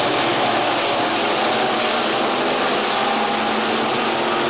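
Several IMCA Sport Mod race cars' V8 engines running at racing speed, heard as a steady, dense, unbroken din of engine noise.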